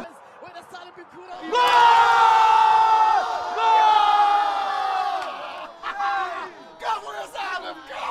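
A group of men yelling together in celebration as a goal goes in: two long, held shouts, the first starting about one and a half seconds in, followed by shorter excited calls.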